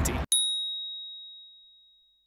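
A single bright ding sound effect: one sharp strike that rings on a single high tone and fades away over about a second and a half, over dead silence.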